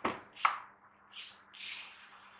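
A plastic storage jar's lid knocks and clicks off, two sharp clicks half a second apart, the second the loudest; then dried seeds start pouring out of the jar into a ceramic bowl with short hissing rattles near the end.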